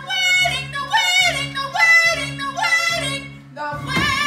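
A teenage girl singing a musical-theatre song with vibrato, her sung phrases sliding down in pitch, over accompaniment playing short repeated chords.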